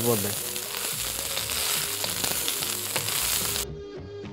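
Vegetables frying in a black iron kadai, sizzling steadily as a wooden spatula stirs them. The sizzle cuts off suddenly about three and a half seconds in, leaving only quiet background music.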